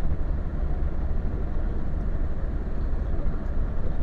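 Steady rumble of a moving car, with road and engine noise heard from inside the cabin.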